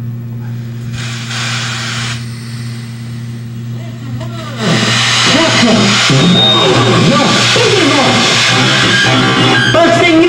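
Noise music from a pedalboard of chained effects pedals: a steady low hum with a brief hiss. About five seconds in it jumps to loud, dense noise full of sliding, wavering pitches.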